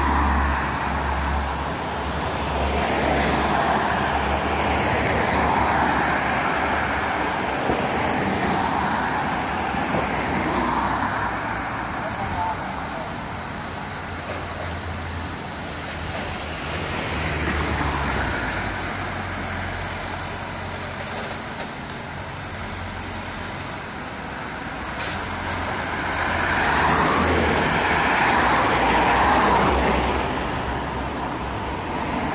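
Diesel engine of a Caterpillar backhoe loader running as the machine works on a dirt slope, mixed with passing road traffic. The loudness rises and falls every several seconds.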